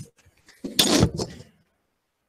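A short scraping rustle with a couple of knocks, about a second long: handling noise from someone moving and handling objects close to the microphone.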